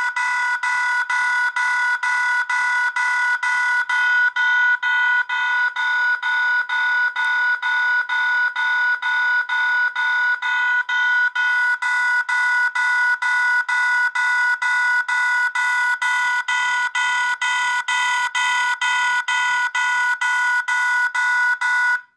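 Recorded railroad crossing bell ringing through a small horn speaker, fed from an Adafruit sound board by a homemade Snap Circuits amplifier circuit. It is loud and a bit staticky, struck about twice a second at an even pace, and it cuts off suddenly at the end.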